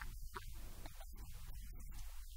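A man's voice speaking faintly and indistinctly over a steady low hum, with patchy, warbling hiss above it.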